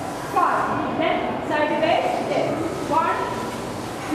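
Speech: a woman's voice talking.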